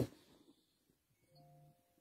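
Near silence, with a faint steady electronic tone coming in a little past halfway and holding, two pitches sounding together.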